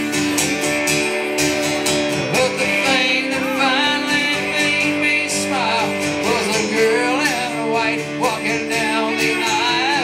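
Live band music: a strummed acoustic guitar with a second guitar playing lead lines, and a man singing.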